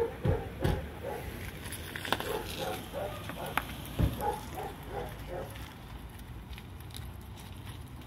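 Faint, indistinct voices in the background, with several sharp knocks. The loudest knocks come just after the start and about four seconds in.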